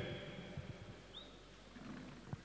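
Faint reverberant hall ambience as the echo of a public-address announcement dies away in a large indoor sports hall, with a brief high squeak about a second in.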